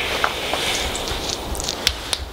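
Rustling of clothing and handling noise on a handheld phone microphone, with a few sharp clicks near the end.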